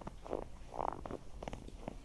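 Footsteps on fresh snow, about two steps a second.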